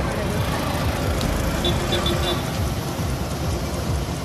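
Roadside street noise: a vehicle engine running amid traffic, with people's voices, and a few short beeps about halfway through.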